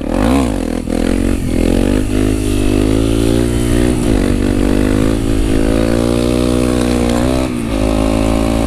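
Honda CRF250 supermoto's single-cylinder four-stroke engine with a Yoshimura exhaust, held on the throttle in second gear through a wheelie: its revs dip and rise several times, climb slowly, then drop briefly near the end. The engine has lost power, which the owner puts down to a worn fuel pump.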